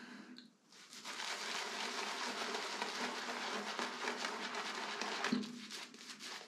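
Shaving brush working lather across the face: a steady, fast wet rustle of bristles scrubbing on skin and stubble. It starts about half a second in and tails off shortly before the end.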